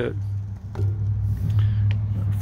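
Steady low hum of a running machine, with little else over it.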